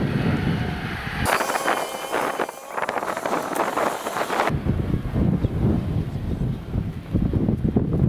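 Five-door Lada Niva 4x4's engine pulling under load in first low gear up a sandy slope, with heavy wind noise on the microphone. For about three seconds in the middle the low rumble drops out and a thinner, higher-pitched sound takes its place before the engine and wind return.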